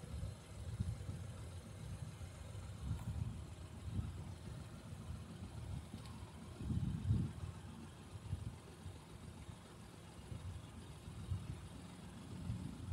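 Wind buffeting the microphone: an uneven, gusting low rumble that swells and drops every second or so, strongest about seven seconds in.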